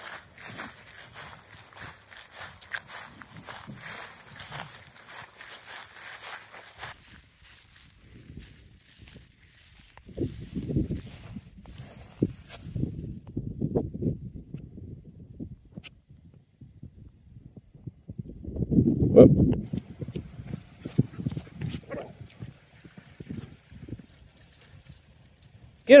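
Footsteps of someone walking through meadow grass: a crackly brushing rustle for the first several seconds, then uneven low thuds, loudest about three-quarters of the way through.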